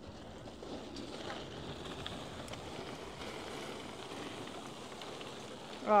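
Steady outdoor hiss with no distinct events, ending in a short spoken exclamation.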